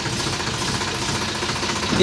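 Tractor's diesel engine running steadily in reverse gear, drawing a loaded trolley backwards.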